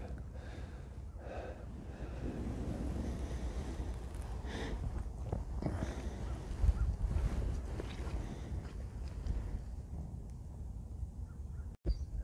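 Wind rumbling on the microphone outdoors, with faint rustling and handling noises scattered through it. The sound drops out abruptly for an instant near the end.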